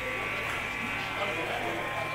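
Steady electrical hum and buzz from the stage amplification, left idling after the music stops, with faint talk underneath.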